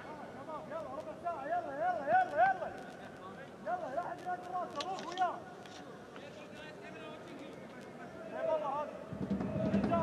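Men's voices shouting in a football stadium in short repeated calls, over a steady stadium hum, with a low rumble coming in near the end.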